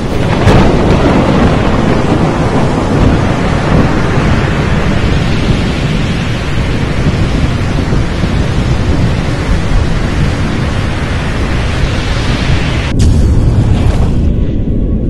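Thunderstorm sound effect: a loud, steady rush of heavy rain over a low rolling rumble of thunder, with a sudden sharp crack about a second before the end.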